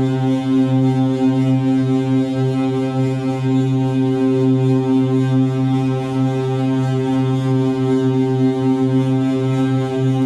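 Modular synthesizer playing a sustained low drone, rich in overtones, holding one pitch throughout with a slight wavering in level.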